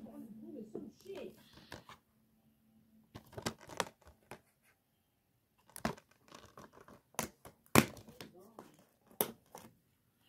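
A plastic DVD case being handled: crinkling with a run of sharp clicks and snaps, the loudest snaps coming three times in the second half.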